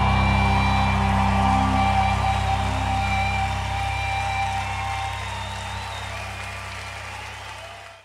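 A live rock band holding a final sustained chord while the audience claps, the whole sound fading away steadily and then cutting off.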